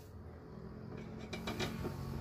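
Light handling clicks and knocks on a small glass tank, a few of them about a second and a half in, over a low steady hum.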